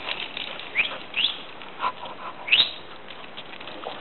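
Male tortoise squeaking while mounting a leather boot: several short, rising, high-pitched squeaks in the first three seconds, the mating calls a male tortoise makes during courtship.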